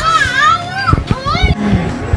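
A young child's high-pitched voice in the background, rising and falling over the first second and a half.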